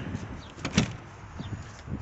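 A few light knocks and clicks, the clearest ones close together just under a second in, over low outdoor background noise.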